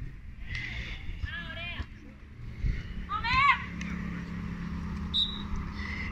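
A few short voice calls from people around a sand volleyball court, three brief bursts over low background noise, with a faint steady low hum in the second half.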